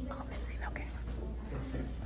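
Low, whispered voices over a steady low hum.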